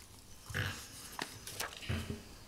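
A man's brief low throat sounds at a close microphone, one about half a second in and another at the end, with a few small clicks between them from papers being handled.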